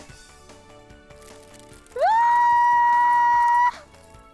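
Soft background music, then about two seconds in a loud whistle-like tone that slides up quickly, holds one steady pitch for under two seconds and stops abruptly. It sounds like an edited-in sound effect.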